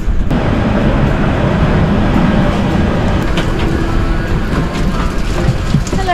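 Steady rumble and hiss of a parked airliner's ambient noise, its air systems running at the gate, with a few faint clicks.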